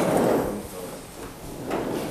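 Scraping, rustling movement noise: a half-second burst at the start and a shorter one near the end, as people in the room get up and move past.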